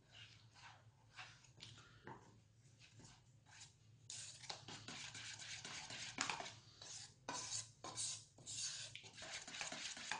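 A metal spoon stirring and scraping around a stainless steel bowl, mixing hot cream into chocolate to melt it into ganache. Soft, scattered strokes at first, then quicker and louder scraping from about four seconds in.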